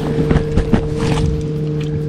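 Steady hum of a boat motor running, with a few short clicks and knocks over it.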